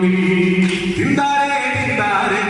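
A man singing into a microphone, amplified over PA loudspeakers, holding long notes; a new note comes in about a second in.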